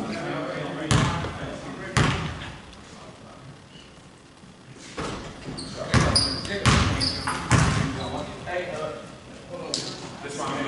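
Basketball bouncing on a hardwood gym floor in an echoing gym: two single bounces about a second apart early on, as at the free-throw line. Later comes a flurry of thuds with short sneaker squeaks and players' voices as play moves around the court.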